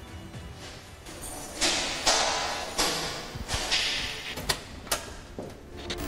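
A bunch of keys rattling and a key turning in the lock of a steel door: a few short scraping rattles, then two sharp clicks near the end as the lock is turned twice.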